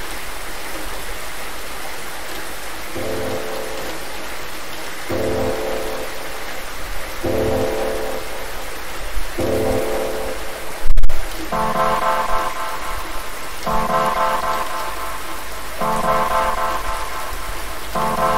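Steady rain with a sharp clap of thunder about halfway through, the loudest moment. Synthesizer chords come in after a few seconds, each held about two seconds, and move higher after the thunderclap.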